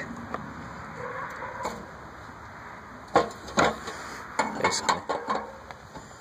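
Steel parts of a homemade mower steering setup being handled: a faint hiss for the first few seconds, then a quick run of sharp metallic clinks and knocks about three seconds in.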